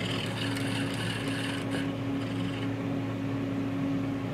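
Rudolph Auto EL III ellipsometer running through a measurement: a steady machine hum with a fainter higher whir over it that stops about two and a half seconds in.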